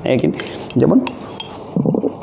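A few light, sharp clinks of a glass conical flask being handled as a thin tube is set into it, with brief wordless sounds of a man's voice in between.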